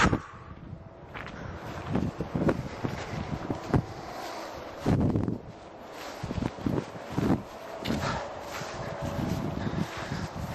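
Footsteps and handling noise while walking: irregular dull thumps and rustles as a handheld camera is carried and moved, with a sharp click at the very start.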